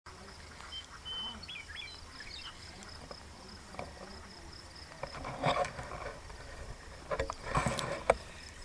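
Faint outdoor ambience: a few short, high whistled chirps in the first two seconds over a thin, steady high buzz, with brief rustles and bumps in the second half.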